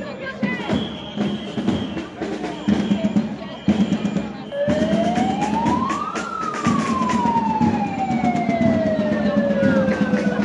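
A siren wails over a crowd of marchers. About halfway through it rises in pitch for a second and a half, then falls slowly for several seconds, and it starts rising again at the very end.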